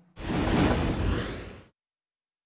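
Broadcast transition whoosh sound effect: a single rushing swoosh with a deep low end, lasting about a second and a half and fading out.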